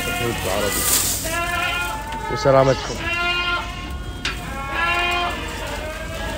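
Ardi goats bleating, several drawn-out calls of about a second each, one after another.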